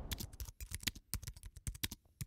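Keyboard-typing sound effect: a quick, irregular run of faint clicks, about ten a second.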